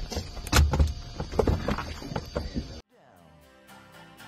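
Knocks, thumps and clothing rustle of a person climbing out of a light aircraft's cabin onto the wing. The sound cuts off abruptly almost three seconds in, and quiet music with a steady beat begins.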